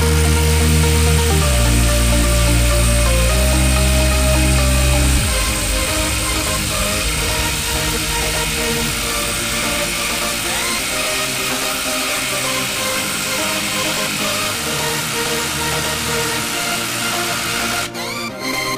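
Electronic dance music over a Hilti SID 2-A12 12-volt cordless impact driver hammering continuously as it drives a long lag screw into wood. The music is the louder of the two.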